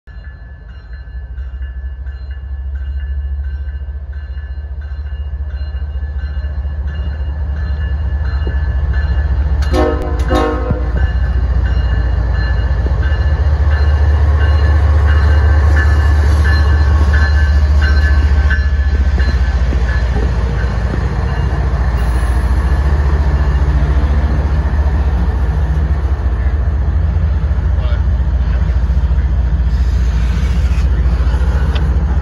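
A CSX freight train led by a GE ES44AH diesel-electric locomotive approaches and passes close by. The diesel's deep rumble builds and is loudest as the locomotive goes past, with a short horn blast of about a second roughly ten seconds in. Then the double-stack container cars roll by.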